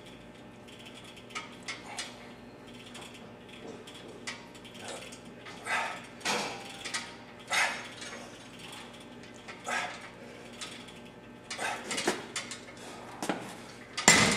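Gym cable machine worked through repeated rope pulls: the cable running over its pulleys and the weight stack clinking in short, irregular bursts a second or two apart.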